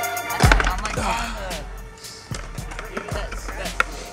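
A hip-hop track ends with a final hit about half a second in. It gives way to the live sound of a skatepark: skateboards rolling, with scattered sharp clacks of boards and a few voices.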